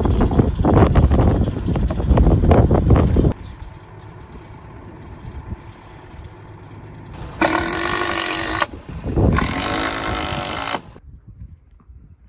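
Truck-mounted crane's diesel engine running, loud for the first three seconds, then dropping to a quieter steady rumble as the crane raises the wooden mast. There are two loud stretches of hissing, about seven and nine seconds in.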